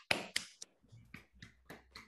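Hand clapping: three sharp claps in the first half second, then fainter, scattered claps.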